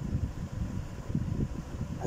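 Uneven low rumble of background noise with a faint steady hum running through it.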